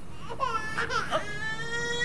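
A woman's strained, crying whimper: a few short wavering cries, then one long, steady, high wail.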